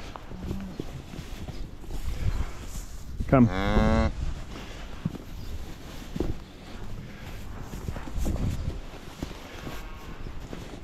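A cow's single rising moo, a bit under a second long, about three seconds in. Under it there is low shuffling and rustling of steps through straw bedding.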